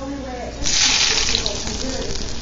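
Hot tempering oil with fried dried red chillies and fenugreek seeds poured onto yogurt-coated potatoes: a sudden loud sizzle about half a second in that goes on crackling.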